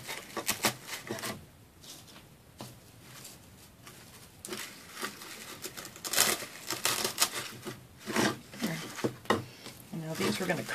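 Rustling and crackling of artificial pine picks as they are handled and pushed into the foam inside a small wooden sleigh, with small irregular clicks, busier in the second half.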